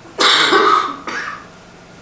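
A man coughing: one loud cough a moment in, then a shorter, weaker one.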